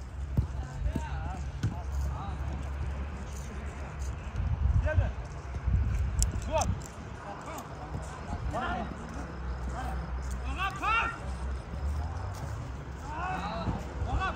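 A football being kicked several times, each a sharp knock, amid players' shouts and calls during a small-sided football match.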